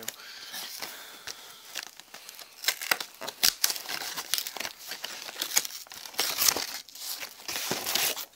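Packaging crinkling and tearing as a chocolate Easter egg is unwrapped by hand, in irregular rustles with sharper bursts of crackle that stop suddenly at the end.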